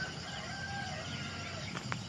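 A rooster crowing once, faintly, over a steady low hum, with a sharp click near the end.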